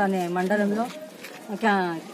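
A woman's voice speaking in short phrases, with a brief pause in the middle: speech only.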